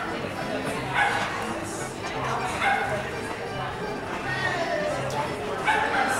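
Dog barking repeatedly, short barks about once a second.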